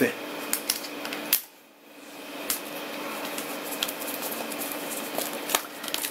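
Plastic shrink-wrap being pulled and peeled off a laptop box, crinkling with scattered crackles. There is a brief lull about a second and a half in.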